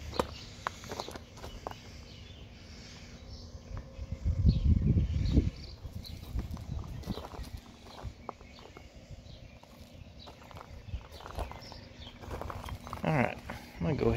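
Footsteps crunching on gravel as someone walks slowly around, with scattered light clicks. A louder low rumble comes about four to five seconds in, over a faint steady hum.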